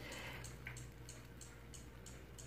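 Quiet room tone: a faint, steady low hum with light hiss and one tiny click about two-thirds of a second in.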